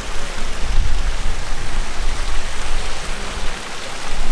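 Loud, steady rushing noise with a heavy, uneven low rumble: wind buffeting the camera microphone.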